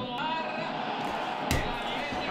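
Low, steady background noise with no speech, broken by a brief click just after the start and a louder knock about a second and a half in, at points where the recording is cut.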